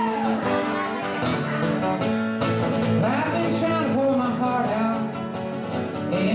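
Acoustic guitar played solo, strummed chords ringing steadily, with a singing voice joining about halfway through.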